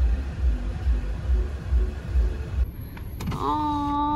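Car interior with a pulsing low road rumble; about three seconds in, an electric power window motor starts up with a short rising whine and then runs with a steady hum.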